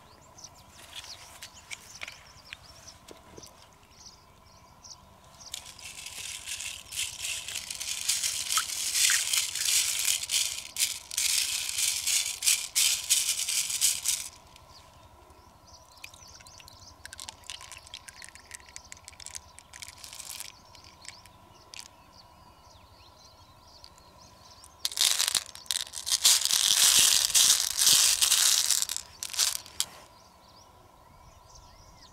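Small coloured beads rattling and clattering against each other in an open freshwater mussel shell as they are stirred and shaken by hand, in two long spells of several seconds each with scattered clicks between.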